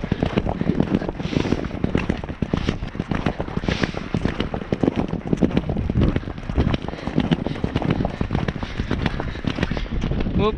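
Hoofbeats of a galloping horse on turf, picked up close from the rider's camera as a dense, irregular stream of thuds and crackling knocks.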